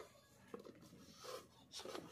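Near silence with faint handling noise: a light tick about half a second in and soft rubbing as a plastic Grohe SmartBox housing is turned in the hand.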